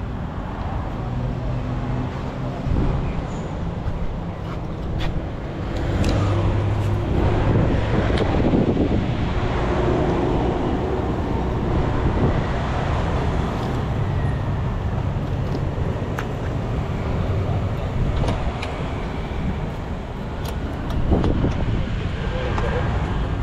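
Motor traffic and engines running steadily at low speed, with a few light clicks.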